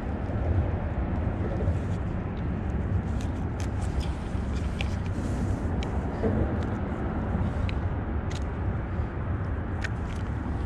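Steady low outdoor rumble, with scattered light clicks and taps as a plastic bait-loading tube and mesh bait wrap are handled.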